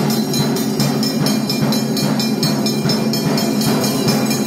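Temple puja music during the lamp offering: fast, even clanging of bells and percussion, about four to five strokes a second, over a sustained low tone.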